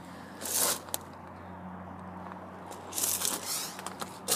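Two short scraping rustles close to the microphone, one about half a second in and a longer one around three seconds in, with a single sharp click between them: handling noise as the camera is brought down to the tyre tread.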